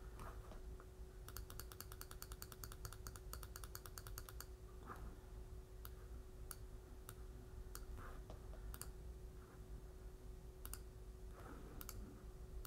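Faint clicking of a computer mouse: a quick, even run of clicks lasting about three seconds, then single clicks here and there. A faint steady hum runs underneath.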